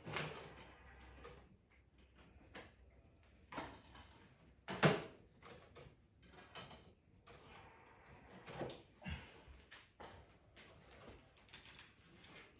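Faint clicks and knocks as a disc is swapped in a Panasonic Ultra HD Blu-ray player, its disc tray opening; the sharpest click comes about five seconds in.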